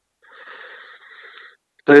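A man drawing a faint, hissing breath for about a second, then his voice starting just before the end.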